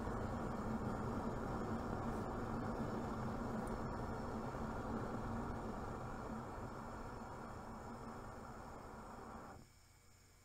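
Propane burner flame and gas flow making a steady rushing sound. It fades gradually as the inlet gas pressure is throttled down toward almost nothing, then cuts off abruptly near the end. At this low pressure the flame goes lazy and heads straight up, the condition a low-pressure gas switch is meant to shut off.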